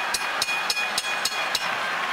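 Boxing ring bell struck about seven times in quick succession to start the round, each strike ringing on in a steady high tone over arena crowd noise.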